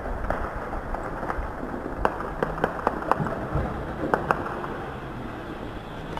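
Distant small-arms gunfire: single sharp cracks at irregular intervals, more of them from about two seconds in, over a steady low rumble.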